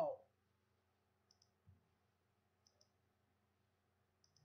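Faint computer mouse clicks, about three, one after another, placing nodes on a shape's outline in digitizing software. A soft low bump comes between the first and the pair.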